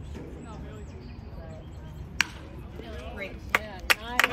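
A few single sharp smacks, one about two seconds in and two more near the end, over faint murmuring voices of spectators.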